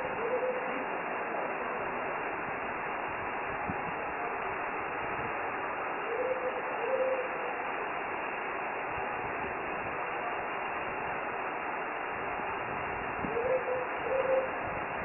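A short two-note hooting bird call, repeated three times about six and a half seconds apart (at the start, about six and a half seconds in, and near the end), over a steady background hiss.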